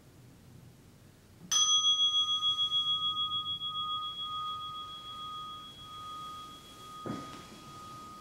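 A meditation bell is struck once, about a second and a half in, and rings on with a clear tone that fades slowly. It marks the end of the meditation sitting. A soft thump comes near the end while the ringing continues.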